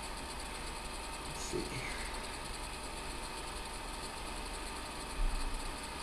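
Quiet room tone: a steady hiss with no other sound, except a brief soft low thump about five seconds in.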